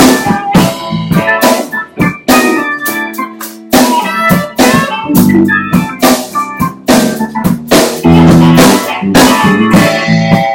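Live rock band playing: drum kit, electric guitar, electric bass and an organ-toned keyboard, with steady drum hits under held chords.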